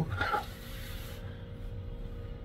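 Quiet room tone with a faint steady hum, after the tail of a man's voice fades out in the first half second.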